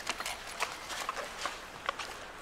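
Rummaging through a handbag: an irregular run of small clicks and knocks as things inside are shifted about.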